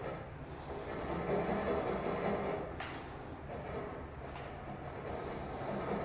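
Low steady background noise with two faint light clicks, about three seconds and four and a half seconds in.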